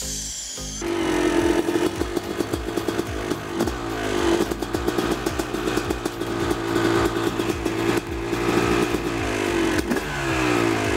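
Yamaha YZ250 single-cylinder two-stroke dirt bike engine starting up about a second in, then running with repeated throttle blips, its pitch rising and falling again and again.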